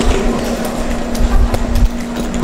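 Wheeled suitcases rolling over a tiled floor: a steady low hum with scattered clicks, along with footsteps.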